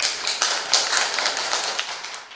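A class of young children clapping in applause: a dense patter of hand claps that starts suddenly and dies away near the end.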